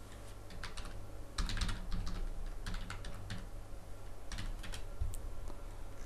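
Computer keyboard typing in short runs of keystrokes as a date range is entered, over a steady low electrical hum.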